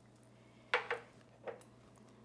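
Two light knocks of cookware while coconut milk goes into a stew pot: a sharper one about three-quarters of a second in and a fainter one about a second and a half in.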